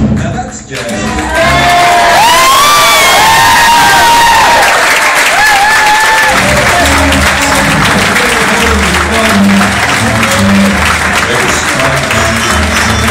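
A song ends, and about a second later an audience breaks into loud applause and cheering, with shouts and whistles over the clapping. About six seconds in, music with a steady bass line comes back in under the continuing applause.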